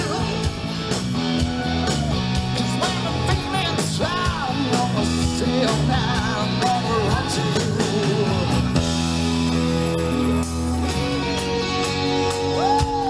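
Live rock band playing through a stage PA: electric guitar, bass and drums, with singing.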